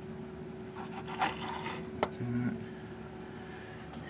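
Scraping and rubbing handling noise as an oscilloscope probe is clipped back onto a small circuit board, with one sharp click about two seconds in. A faint steady tone runs underneath.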